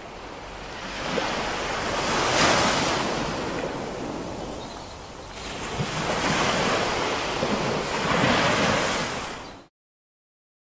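Ocean surf washing and breaking in a steady rush. It swells twice and cuts off suddenly near the end.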